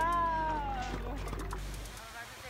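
A woman's drawn-out, falling, cat-like vocal whine, about a second long, in playful banter.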